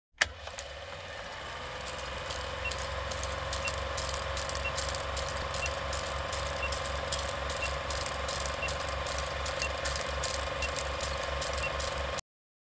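Film projector sound effect: a steady mechanical whir with fast clicking and flutter of film running through the gate, opening with a sharp click. Over it, a short high beep sounds once a second, ten in all, as on an old film countdown leader.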